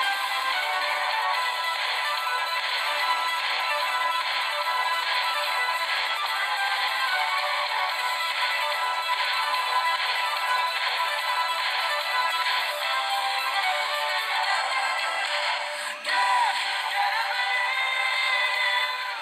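Action music from a cartoon soundtrack, with laser zapping sound effects. It plays thin, with no bass, from a TV speaker. It breaks off briefly about two seconds before the end, then resumes.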